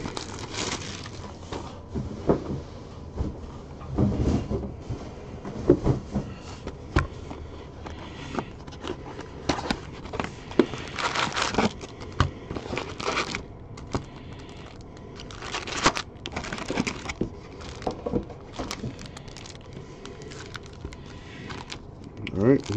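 A cardboard trading-card hobby box being opened and its foil packs handled: irregular rustling, crinkling and tearing with scattered sharp clicks, loudest a little past the middle.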